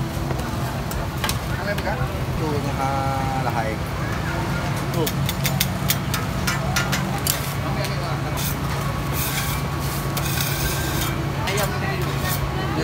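Busy food-market ambience: a crowd's background chatter over a steady low hum, with scattered sharp clicks and rustles from food being handled and wrapped in paper.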